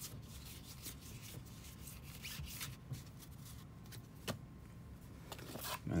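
Faint rustling and flicking of a stack of 1992 Leaf baseball cards being thumbed through by hand, with soft scattered ticks and one sharper click about four seconds in.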